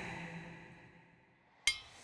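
A dark trailer score dies away to near silence, then a single sharp hit lands near the end and rings briefly.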